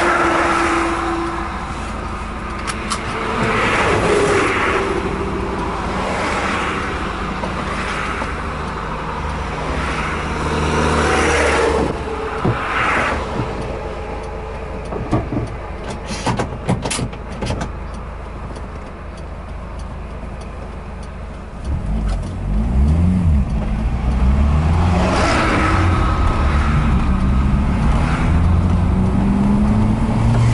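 Road and tyre noise of a car travelling along a highway, with oncoming vehicles rushing past now and then. From about two-thirds of the way in, the engine grows louder and its pitch rises several times in succession as the car accelerates through the gears.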